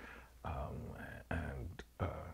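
Quiet, breathy, almost whispered speech in two short stretches during a pause in the conversation.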